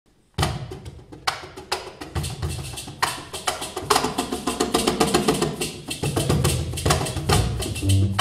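Live world-jazz band starting to play about half a second in: crisp hand-percussion strikes over low bass notes, with pitched keyboard or melodic lines filling in from about four seconds.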